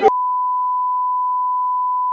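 Censor bleep: one steady pure tone that cuts in sharply just after the start and completely blanks out the shouting crowd's speech.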